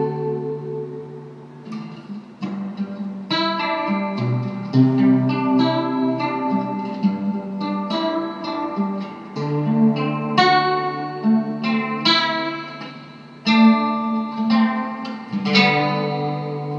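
Nylon-string classical guitar played slowly through a chorus effect: plucked melody notes over held bass notes, the tone widened and shimmering from the chorus.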